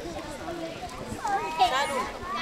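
Voices talking away from the microphone, with a high-pitched voice that grows louder in the second half.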